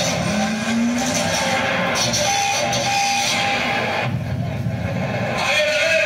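Loud, distorted playback from an outdoor loudspeaker playing the track for a students' stage performance, with rising pitch glides and a held tone over a dense noisy layer.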